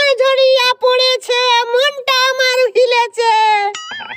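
A high-pitched voice sings a short phrase over and over, in quick syllables on one steady note. Near the end it holds a longer note that slides slightly down and then stops.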